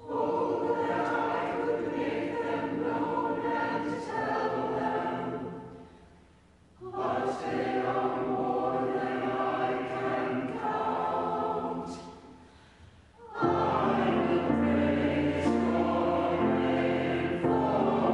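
Church choir singing psalm verses in two phrases, each one dying away into a short pause with the room's echo. About 13 seconds in, the choir comes back louder and fuller, with low held notes of accompaniment underneath.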